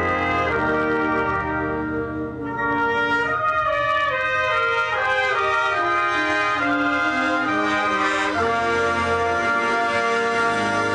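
Brass ensemble music, trumpets and trombones playing sustained chords, with a stepwise falling line in the middle and a new chord entering near the end.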